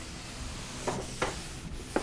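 Eraser rubbing across a chalkboard, a steady scrubbing hiss with a few light knocks.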